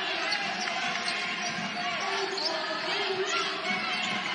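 A basketball being dribbled on a hardwood court, with the murmur of an arena crowd.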